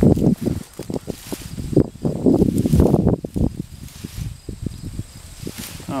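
Garden fork driven into soil and levered up through dry straw mulch: a run of crunching, rustling strokes for about three and a half seconds, then softer rustling.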